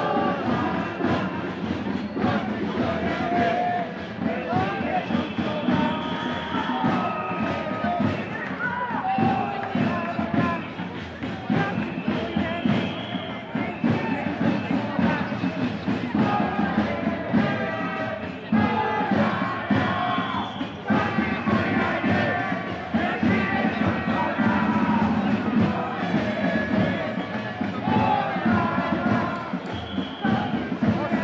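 Music playing over the continuous noise of a marching crowd, with many voices mixed in.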